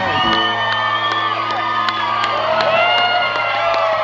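Backing music playing held low notes while a party crowd cheers and whoops.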